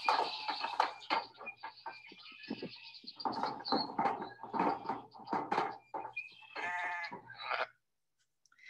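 Sheep bleating as they stand crowded in a metal-panelled chute, with irregular knocks and rattles throughout and one longer bleat shortly before the end.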